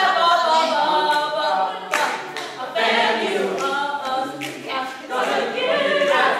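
A group of voices singing together unaccompanied, with a single sharp hit about two seconds in.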